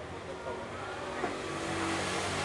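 A steady low motor hum that grows louder toward the end, under faint indistinct chatter.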